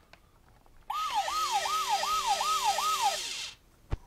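Dickie Toys rescue helicopter's built-in siren sound effect, played through its small speaker: six quick falling wails, about two and a half a second, over a steady hiss. It starts about a second in, lasts a little over two seconds, and is followed by a single click near the end.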